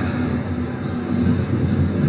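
Steady rumbling background noise with a faint low hum, even throughout and without speech.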